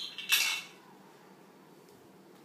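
A brief clinking clatter of small hard objects in the first half-second, then quiet room tone.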